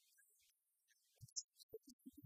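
Very faint speech: a man's voice starting about a second in, after a moment of near silence with soft breath noise.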